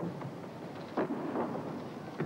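A gymnast's feet pounding down a vault runway, with a loud thud about a second in from the take-off on the springboard or the landing, echoing in a large hall.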